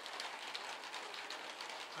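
Light rain falling on a newly built corrugated porch roof: a steady hiss dotted with many small drop ticks.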